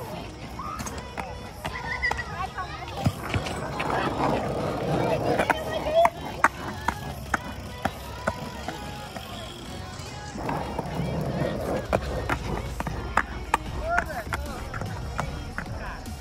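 Skateboard wheels rolling over concrete, with many sharp clicks and knocks from the board and a low rumble that grows louder around the middle of the stretch.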